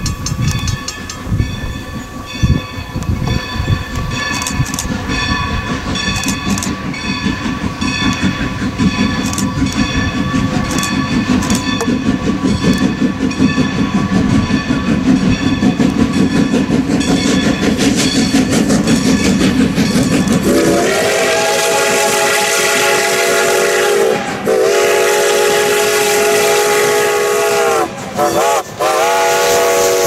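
Strasburg Rail Road #90, a Baldwin 2-10-0 steam locomotive, working up close with its exhaust and running gear growing louder as it approaches. About 21 seconds in, its steam whistle sounds two long blasts, one short and another long: the long-long-short-long grade-crossing signal.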